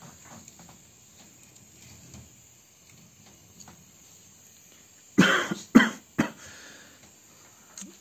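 A man coughing: three sharp coughs in quick succession about five seconds in, the first the longest.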